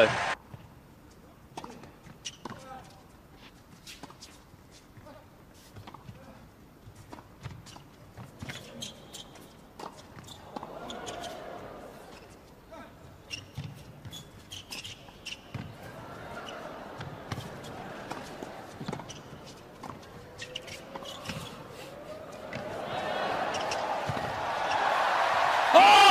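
Scattered sharp clicks of a tennis ball bouncing and being struck by rackets, over faint murmuring voices that swell louder near the end.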